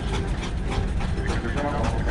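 Indistinct voices in short stretches over a steady low rumble.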